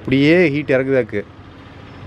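A man's voice speaking for about a second, then a lull with only faint background noise.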